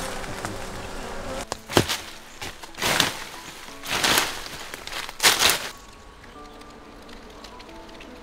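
Honeybees buzzing around a hive in a tree trunk, swelling loudly as they fly close past about three, four and five seconds in. There is one sharp knock just before the two-second mark.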